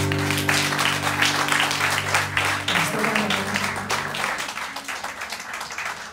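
Audience applauding over the band's last chord, which rings on and fades out about three seconds in.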